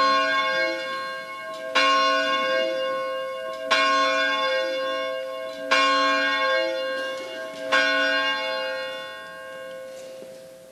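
A bell tolled slowly: four single strikes about two seconds apart, each ringing on and fading, the last fading out near the end.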